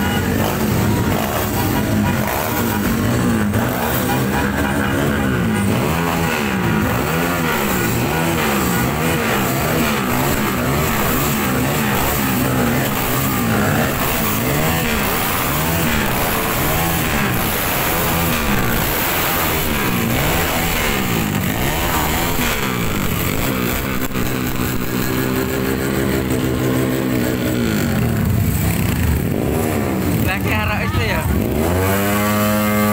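Several motorcycle engines running and revving up and down as a line of motorcycles rides past, with music from a loudspeaker underneath. Near the end one engine climbs in pitch as it speeds up.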